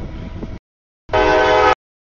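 Diesel freight locomotive passing at a grade crossing: a burst of engine and wheel rumble, then a short, loud horn blast about a second in that stops abruptly. The sound cuts out to dead silence between the two.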